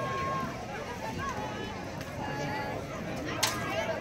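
Faint, distant overlapping voices and calls from people around the field, with a single sharp click about three and a half seconds in.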